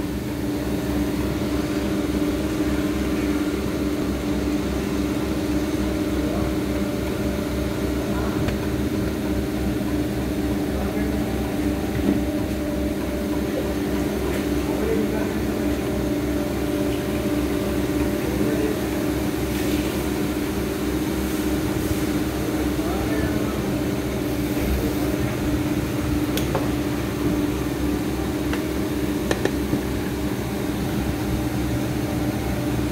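Steady machinery drone: a constant low hum with a few fixed tones, holding level without a break.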